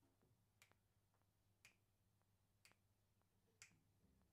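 Four faint finger snaps, evenly spaced about a second apart, counting off the tempo before a jazz band comes in.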